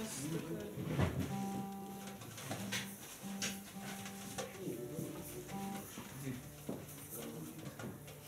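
Soft, steady held instrument notes that come and go in short stretches, with scattered light knocks and handling noise from the musicians getting ready between songs.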